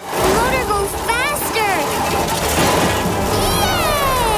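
Cartoon soundtrack: action music over busy sound effects, with several short wordless cries. Near the end a long falling whistle-like glide begins.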